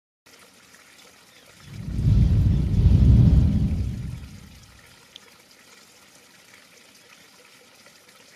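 Intro sound effects: faint trickling-water ambience, with a loud, deep swell that builds about two seconds in and fades away by five seconds. A single small tick follows.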